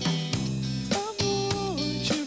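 Live band playing: electric guitar over bass guitar and drum kit, with held notes that slide down in pitch about a second in and again near the end.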